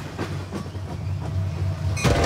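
Monorail train running along an elevated track: a steady low rumble with a few faint light clicks.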